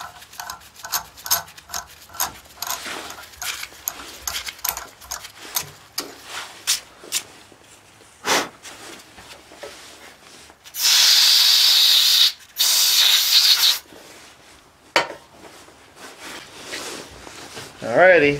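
A 1/2-13 bottoming tap being worked back out of a freshly threaded hole in a steam-engine cylinder casting, giving a run of small clicks and scrapes. Near the middle come two loud bursts of hissing, each about a second long, with a few single clicks after.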